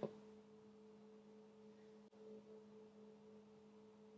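Near silence: room tone with a faint steady hum and a single faint click about halfway through.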